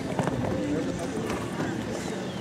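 People talking in the background over outdoor arena noise, with a few dull hoofbeats from a horse cantering on sand.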